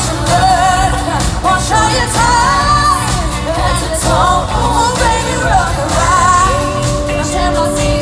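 Live pop music: a woman singing the lead into a microphone over a band with a heavy, steady bass and keyboards, loud in a concert arena.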